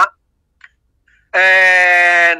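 A man's voice holding one long, level hesitation sound, like a drawn-out 'eeh', for about a second, starting after a pause of just over a second.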